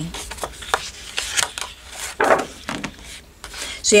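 Paper rustling and crackling as hands handle and flatten a large page of a scrapbook paper pad, with scattered small ticks and a short louder rustle a little after two seconds in.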